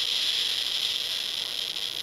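CD V-700 Geiger counter clicking so fast that the clicks run together into a dense, steady crackle. This is a very high count rate from a person made radioactive by radioactive iodine treatment, and it eases slightly near the end.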